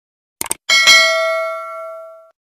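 Two quick clicks, then a bright bell ding that rings on and fades slowly. This is the stock click-and-bell sound effect of an animated subscribe button, with the cursor clicking the notification bell.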